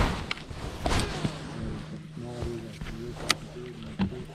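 Steady low hum of a bow-mounted electric trolling motor, with rustling and a few sharp clicks as a baitcasting rod and reel are handled; one click about three seconds in is the loudest.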